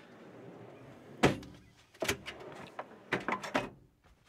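Trailer's metal storage drawer running on its slides and shutting with a loud bang about a second in, followed by a knock and a few quick metal clanks as a compartment door is worked open.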